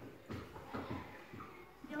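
Faint classroom background of children's voices with a few light taps and knocks, and a child starting to speak right at the end.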